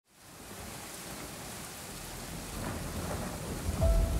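Steady rain falling, fading in from silence, with a low rumble that builds through the second half.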